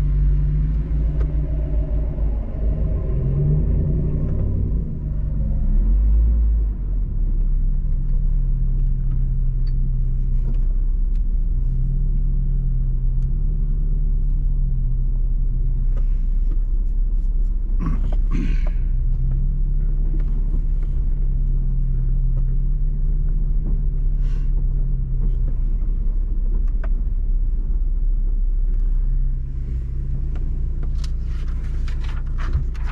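Off-road vehicle's engine running steadily at low trail speed, a low rumble heard from inside the cab, its pitch shifting slightly with the throttle. There is a brief clatter of knocks about 18 seconds in, as over a bump.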